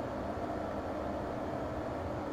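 Steady background noise in a small room: an even low rumble and hiss with a faint hum underneath, unchanging throughout.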